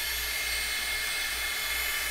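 Hot Tools Blow Brush (a hot-air round brush) running steadily: an even whoosh of blown air from its fan as it is worked through a synthetic wig.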